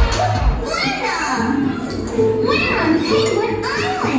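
A performance mix played through club speakers: a cartoon-style child's voice speaking over backing music. The heavy bass beat drops out about half a second in.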